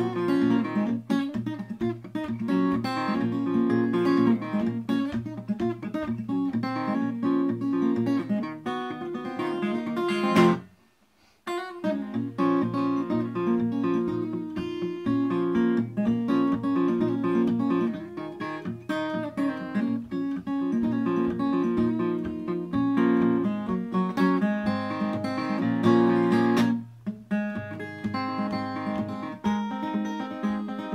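Capoed acoustic guitar played fingerstyle, a picked melody over the thumb's bass notes. About a third of the way through the playing stops for about a second, then picks up again.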